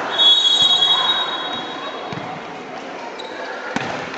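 Volleyball rally in a gym: a high, steady whistle tone starts about a fifth of a second in and holds for about two seconds over hall noise, and a sharp ball hit sounds just before the end.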